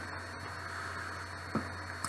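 Room tone of a voice-over recording: a steady low electrical hum under faint hiss, with one short faint sound about one and a half seconds in.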